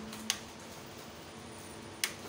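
A rocker switch on a heat-lamp load bank clicks once, about a third of a second in, switching more load onto a pure-sine inverter. This is the load step at which the inverter's protection shuts it off. A steady hum from the inverter board's cooling fan runs underneath.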